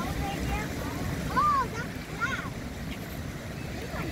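Steady outdoor rumble of wind on the microphone and water flowing through concrete fish raceways, with a few short high-pitched vocal calls, the loudest about a second and a half in and another just after two seconds.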